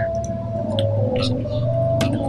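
A steady low hum with a held higher tone above it, and a few faint soft clicks.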